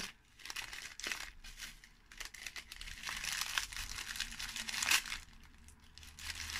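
Tissue paper being unwrapped by hand, rustling and crinkling in an irregular run of rustles that is busiest through the middle, with a few sharper crackles.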